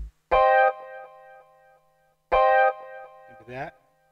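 Two short sampled chord stabs played from the Akai MPC One's pads, about two seconds apart, each cut short with a brief fading tail. Near the end comes a short voice-like snippet that slides in pitch.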